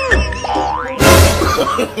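Cartoon comedy sound effects over background music: a pitch sliding down at the start, a quick rising slide, then about a second in a sudden loud crash-like hit that fades over half a second.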